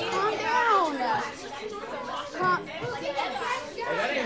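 A class of schoolchildren all talking and exclaiming at once, many excited voices overlapping into a hubbub.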